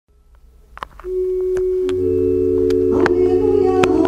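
Organ playing long held notes that enter one after another from about a second in and build into a sustained chord over a low bass note, with a few light clicks over it.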